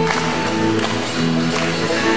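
Live band playing an instrumental passage: strummed acoustic guitars, banjo and electric bass, with a tambourine-like hand percussion part keeping the beat.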